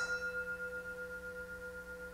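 An altar bell struck once at the start and left to ring on, two clear steady tones slowly fading: the bell rung at the consecration of the wine during the Eucharistic prayer.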